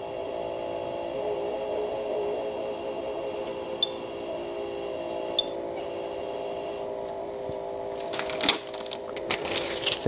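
A patient monitor's built-in strip-chart printer running steadily as it feeds out an ECG strip, a steady whine with a few faint ticks. In the last few seconds, crackly paper handling noises come in as the long printed strip is gathered up.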